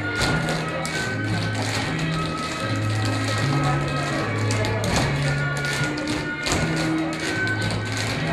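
Group of tap dancers tapping their shoes on a hard floor in time with music that has a steady bass line. A few taps land louder than the rest, one about five seconds in and another shortly after.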